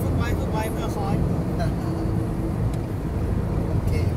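Steady low rumble of a moving car heard from inside the cabin, with brief snatches of voices in the first second or so.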